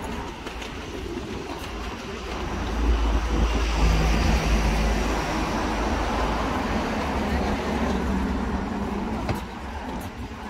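A van driving past on the street, its low engine rumble growing louder from about three seconds in and easing off after it goes by, over steady traffic noise.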